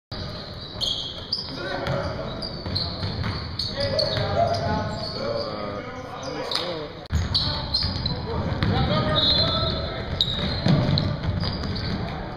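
Basketball game on a hardwood gym floor: the ball bouncing and thudding amid scattered sharp knocks, with players' voices calling out on court.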